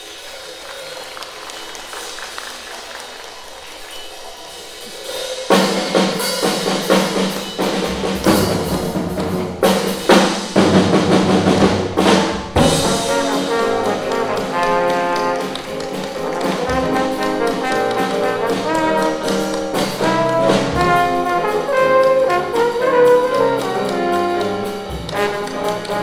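Live jazz combo: soft drum-kit cymbal playing for the first few seconds, then about five seconds in the band comes in loudly, with trombone playing over piano and drums.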